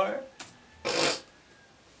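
A single click, then a brief hissing rustle about a second in, with near quiet around them and no music.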